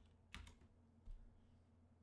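Two faint computer keyboard key presses, one of them the Return key: a sharp click about a third of a second in and a softer thud about a second in, with near silence around them.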